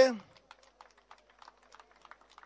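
A man's voice trails off at the start. Then come faint, irregular light clicks, about two or three a second.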